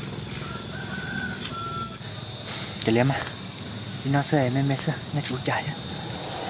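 Steady, high-pitched drone of insects, crickets or cicadas, with a few faint short chirps in the first two seconds. A man's voice cuts in briefly about three seconds in and again from about four seconds.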